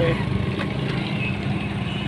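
Engine of a small open vehicle running steadily while moving along a road, a constant low hum with road and wind noise.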